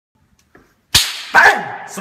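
A single sharp, slap-like crack about a second in, then half a second later a second loud burst that trails off into a man's voice.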